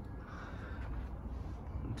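Steady low room hum with faint background hiss and no distinct events: indoor room tone.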